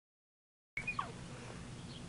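Faint outdoor background: a steady low hum that cuts in suddenly about three-quarters of a second in, with a brief falling chirp right as it starts.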